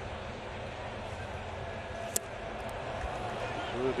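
Steady murmur of a large ballpark crowd, with a single sharp click about two seconds in.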